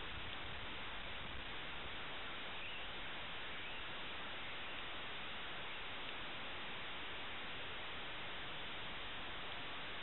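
Steady, even hiss with no distinct events: the background noise of the recording.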